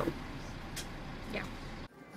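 Steady running noise inside a city bus, with two faint short sounds about a second in; it cuts off suddenly near the end.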